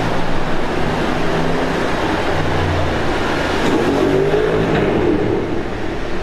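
A car engine revving as the car accelerates through a road tunnel, with traffic noise filling the tunnel.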